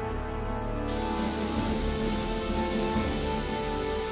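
Cartoon background music, joined about a second in by a steady spraying hiss of gas released from a canister.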